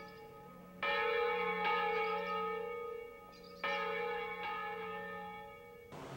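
Church bell tolling slowly: two strokes about three seconds apart, each ringing on and fading away.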